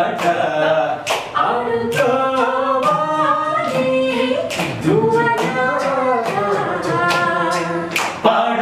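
A group of voices singing a song together, unaccompanied, in long held, sliding notes.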